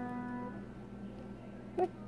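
A single piano note ringing on and fading, then stopping short about a quarter of the way in as the key is let go. A brief, faint voice-like sound comes near the end.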